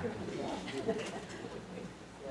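Room tone with a faint, low murmured voice, a short pause between spoken phrases.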